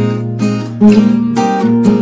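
Background music: acoustic guitar strumming chords, several strokes a second.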